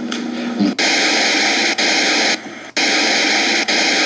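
Loud static hiss in a played-back audio recording: two abrupt bursts, each about a second and a half long, with a short break between, after a drawn-out 'euh' at the start.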